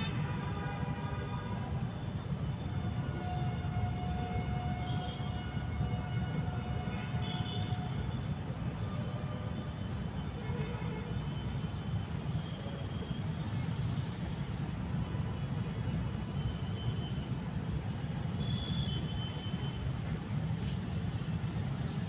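Steady low rumble of outdoor background noise, with faint brief tones now and then in the first half.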